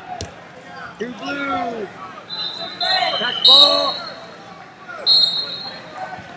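Final seconds of a wrestling bout: a thud on the mat just after the start, voices shouting, and several short high-pitched squeals, the loudest about three and a half seconds in.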